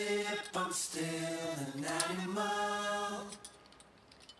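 A single voice singing long, held notes without any instruments, stopping about three and a half seconds in. Faint small clicks follow near the end.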